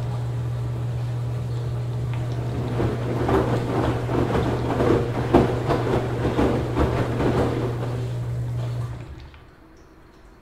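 Washing machine running a wash: a steady low motor hum, with laundry and water sloshing and knocking irregularly in the turning drum, busiest in the middle. The motor and drum stop about nine seconds in.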